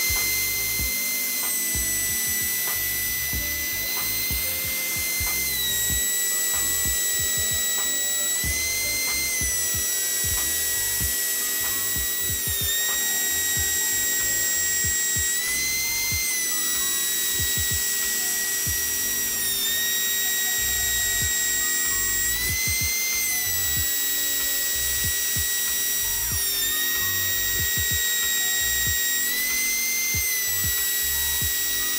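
MPCNC router spindle running and surfacing a nylon chopping board, a steady high whine with overtones. Its pitch shifts briefly every three to four seconds.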